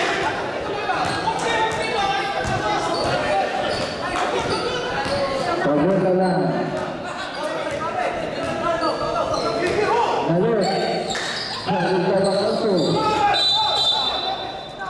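Basketball bouncing on a hard concrete court during live play in a large, reverberant gym, with repeated knocks of the ball and players and spectators shouting over it.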